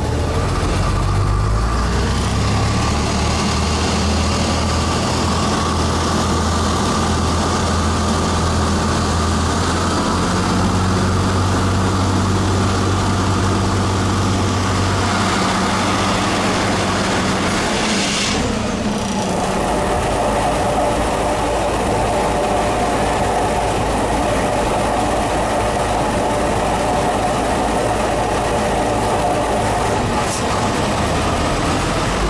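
Diesel railcar heard from inside the carriage, its engine running with a steady low drone as it pulls away. About two-thirds of the way through there is a sudden whoosh and the engine drone drops away. A steady rumble of a freight train's open wagons passing close alongside then takes over.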